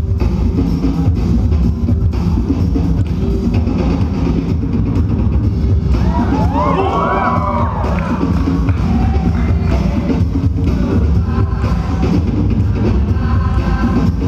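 Loud DJ music with a heavy bass beat, with the crowd cheering and whooping over it about halfway through.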